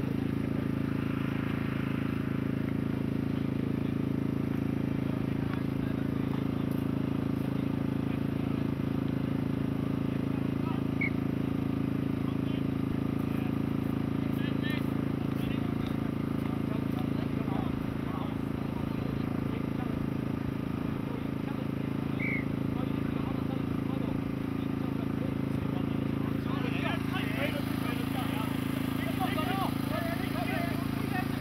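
Open-air ambience at a rugby field: a steady low hum with faint, indistinct shouts and voices of players and onlookers, which pick up near the end.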